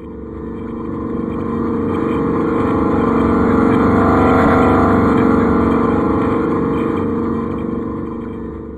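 Outro sound effect: a deep, droning swell with a steady low hum that builds to its loudest about halfway through, then slowly fades.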